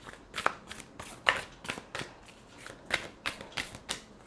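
A deck of cards being shuffled by hand: an irregular run of short swishes and slaps as the cards slide and strike together, a few per second.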